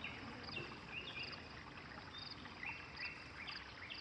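Faint outdoor ambience with animal chirping: a short high chirp repeats at an even pace, with scattered short, lower calls between.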